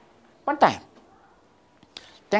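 A single short vocal sound about half a second in, sliding steeply down in pitch. It is otherwise quiet.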